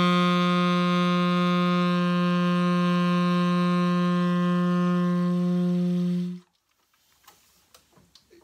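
A Lineage tenor saxophone holds one long, steady low note. It stops cleanly about six seconds in. The highest overtones thin out midway while the body of the tone stays even.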